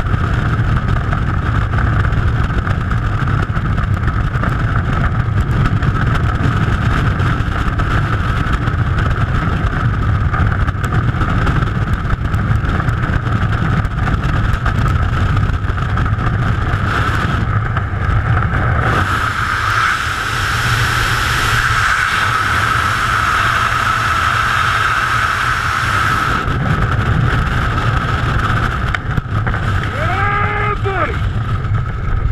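Freefall wind rushing over a skydiver's body-worn camera microphone, a loud steady roar with a constant whistle-like tone in it. Past the middle the low buffeting thins for several seconds while the hiss brightens.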